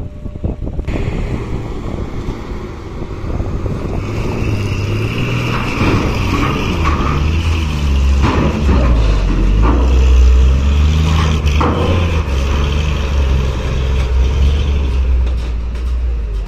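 A loaded diesel cargo truck's engine pulling under load as the truck climbs the steel loading ramp into a ferry. It grows louder and is heaviest a little past the middle, with a few knocks along the way.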